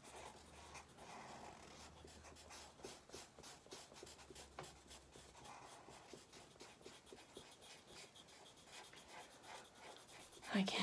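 Faint scratching of a black marker pen on sketchbook paper, in many quick short strokes as a small area is coloured in.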